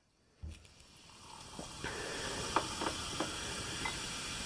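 Carbonated ginger ale fizzing as it is poured from a can into a glass. The hiss builds over the first two seconds, then holds steady with a few small ticks.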